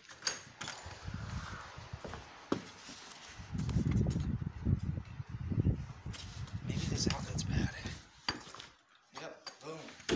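Rumbling handling noise on a phone microphone as it is carried and moved about, heaviest in the middle, with a few sharp clicks and knocks near the start and end.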